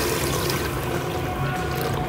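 Water pouring in a steady thin stream into a pot of thick curry gravy.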